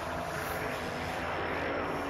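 Anime sound effect of shadows streaming through the air: a steady rushing noise, with faint held tones underneath.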